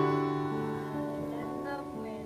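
Background music: slow, sustained chords, shifting to new notes about half a second in and again around a second in.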